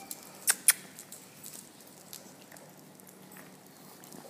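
A puppy's claws clicking and pattering on a hard floor: two sharp clicks about half a second in, then faint scattered ticks.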